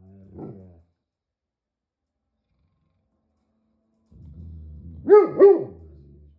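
Great Pyrenees giving a low, drawn-out growl that ends in a short woof just after the start. After a few seconds of silence the low growl comes again and breaks into two loud, deep barks in quick succession about five seconds in.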